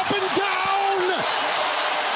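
Basketball arena crowd cheering, with a man's voice holding a long drawn-out call over the noise for about the first second.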